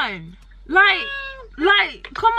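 A woman's high-pitched, emotional voice in short wailing phrases, each rising and then falling in pitch, with brief pauses between them.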